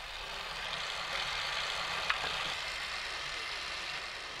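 Tap water running steadily from a kitchen faucet into a stainless steel sink as hands are rinsed under it, with one brief click about halfway through.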